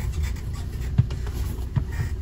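Low steady rumble in a van cab, with faint rubbing and scuffing and one short knock about a second in, as the phone filming is moved and set down.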